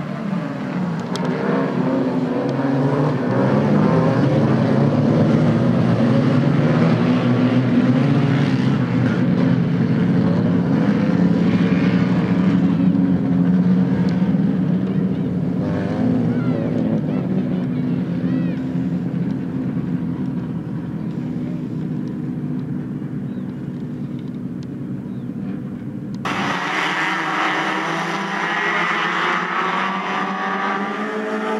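Several Fiat race-car engines running hard together as a pack races on dirt, a dense, steady mix of engine notes. About 26 seconds in the sound cuts abruptly to another group of the cars, thinner and higher-pitched.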